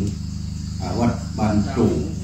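Steady high-pitched chirring of forest insects, under a man's voice speaking Thai into a microphone, which pauses for about half a second early on. A low steady hum runs beneath.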